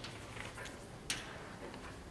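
Chalk tapping on a chalkboard while a word is being written: a few faint ticks, with one sharper tap about a second in.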